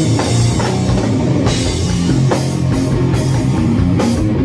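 Live doom/stoner rock band playing a heavy electric guitar riff over a drum kit with cymbals.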